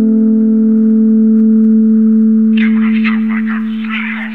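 Downtempo electronic track holding a single sustained drone chord, one low tone with its overtones ringing steadily. About two-thirds of the way through, a sampled spoken voice comes in over the drone.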